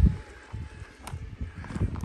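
Quiet outdoor ambience with a low, uneven wind rumble on the microphone and a faint click about a second in.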